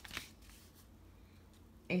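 A brief, light rustle and a couple of soft clicks from paper cards being handled, right at the start, then faint room tone.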